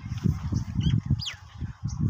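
Uneven low buffeting on the phone's microphone, the sound of wind or handling as the camera moves. About a second in, a bird gives two or three short calls that fall in pitch.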